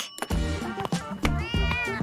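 A domestic cat meows once, a short rising-and-falling call about one and a half seconds in, over upbeat background music.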